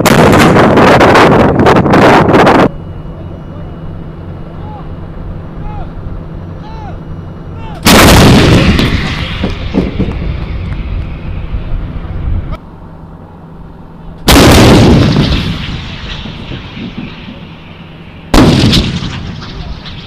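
M109 Paladin 155 mm self-propelled howitzers firing. A very loud opening blast ends abruptly, then three more shots follow several seconds apart, the last near the end. Each shot is a sudden boom followed by a rumbling echo that fades over a few seconds.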